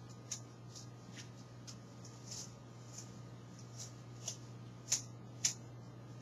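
Scissors snipping through wheatgrass blades: faint, short snips at uneven intervals, about two a second at most, over a low steady hum.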